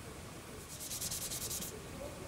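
Quick back-and-forth scuffing of a clear plastic model part with an abrasive, roughening the surface to give the paint a tooth. About a second of rapid rubbing strokes in the middle, around ten a second.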